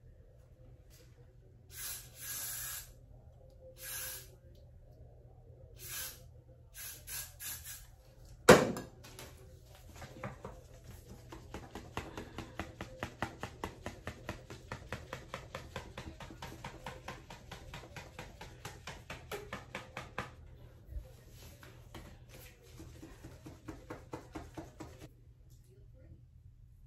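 Several short hisses from an aerosol hair spray can, then a single sharp knock. A long run of quick, regular strokes follows, about three or four a second, from a comb working through hair.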